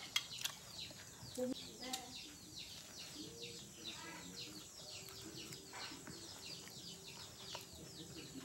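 Faint bird chirping: a steady run of quick falling chirps, several a second, with a couple of soft clicks just after the start.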